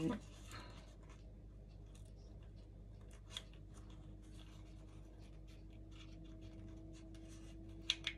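Faint rustling and rubbing of colored paper being handled and shaped by fingers, with a few light clicks and a sharper click near the end.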